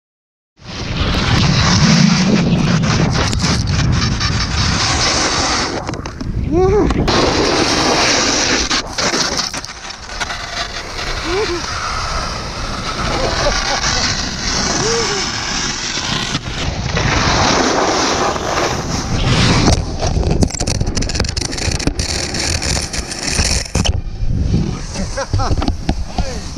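Snowboard sliding and scraping over icy, hard-packed snow, with wind rushing on the action camera's microphone. The noise starts abruptly about half a second in and swells and dips as the rider moves and falls.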